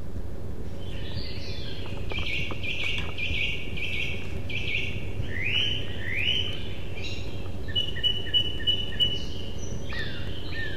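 Small birds singing: a run of quick chirps from about a second in, then a few rising calls, and a pulsing repeated high note near the end, over a steady low hum.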